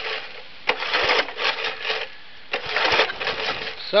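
Recoil starter of a five-horsepower Briggs & Stratton engine pulled twice, each pull a rattling whir of about a second as the engine turns over. The engine has really low compression.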